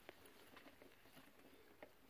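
Near silence, with a few faint, scattered clicks from a gloved hand handling the bidet's plastic supply-hose elbow fitting.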